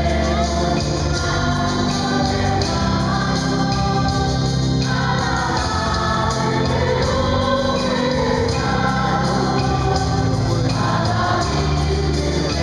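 Church choir of mixed voices singing a hymn into microphones, over steady held low accompaniment notes.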